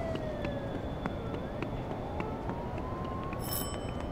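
Siren wailing, its pitch falling until about a second in and then rising slowly, over a steady background noise. A short high ring sounds near the end.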